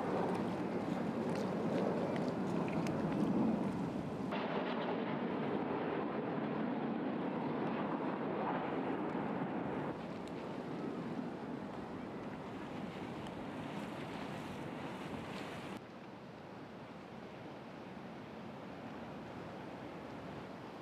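Steady outdoor harbour ambience of wind and water noise. Its level and tone change abruptly three times, where shots are cut together.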